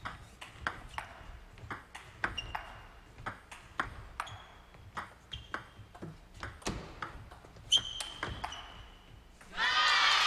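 A long table tennis rally: a celluloid-plastic ball struck by rubber paddles and bouncing on the table, about two to three sharp clicks a second, several with a short high ring. Near the end the rally stops and a loud vocal burst follows.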